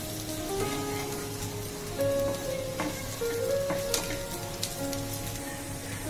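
Sliced onions and grated dry coconut frying in oil in a pan, sizzling as a spatula stirs them, with a few sharp scrapes or taps of the spatula. Background music with held notes plays throughout.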